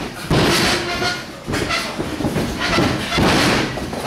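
Several heavy thuds and slams of wrestlers' bodies hitting the ring mat, coming about a second apart.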